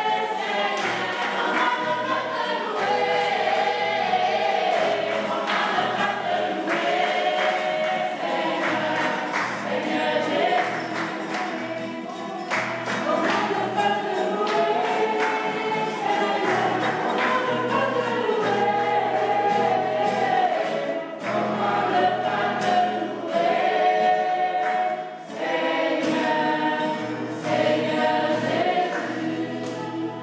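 A mixed choir singing a gospel song together, many voices at once, with short sharp beats running through it.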